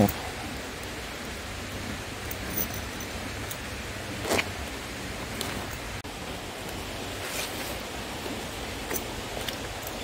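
Steady hiss of outdoor background noise, with a few brief rustles and clicks from a tactical sling pack and its strap being handled.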